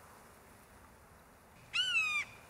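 Faint background hiss, then near the end a single loud, high, clear animal cry that rises and falls slightly in pitch over about half a second.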